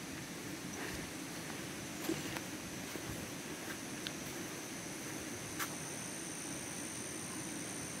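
Faint outdoor ambience: a steady, high-pitched insect drone with a few soft clicks scattered through it.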